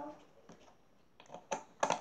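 A few sharp small clicks and taps in the second half: a white plastic screw cap being put back on a small glass jar of paint.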